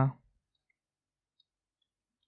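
A man's word trails off at the very start, then near silence with a few very faint clicks.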